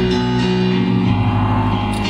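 A live band's slow instrumental intro: held chords that change once or twice, with no singing.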